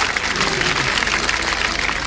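Audience applauding, a steady crackle of many hands clapping.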